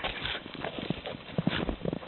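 Pygmy goat butting and thrashing its head and horns in the branches of a small sapling: irregular knocks and rustling.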